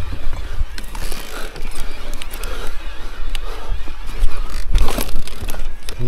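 Electric mountain bike ridden hard up a steep dirt forest trail: a rough steady rumble from the tyres and bike, with several sharp knocks and rattles over bumps, the strongest about five seconds in.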